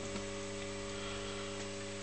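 Steady electrical hum from a rewound microwave-oven transformer supplying an HHO electrolysis dry cell under a load of about 25 amps, over a faint hiss.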